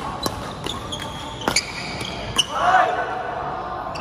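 Badminton rally: sharp racket hits on the shuttlecock and short squeaks of shoes on the court floor, four strikes in under two and a half seconds. The rally ends with a brief shout from a player, the loudest sound.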